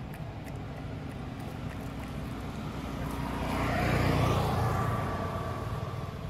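A motor vehicle passing by over a steady low background rumble: it grows louder to a peak about four seconds in, its pitch sliding down as it goes past, then fades.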